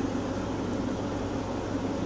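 Steady low hum with an even hiss over it: background room noise, with no distinct events.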